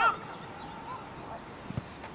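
A short, loud shout with a sharply bending pitch right at the start, then a dull thud about a second and a half later.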